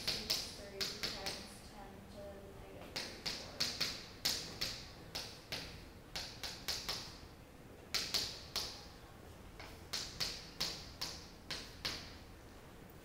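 Chalk writing on a blackboard: quick runs of sharp taps and short scratches as figures are written out, with brief pauses between runs.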